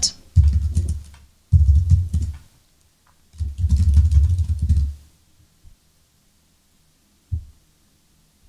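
Typing on a computer keyboard in three quick bursts, each a run of key clicks with dull low thumps. Near the end comes a single click.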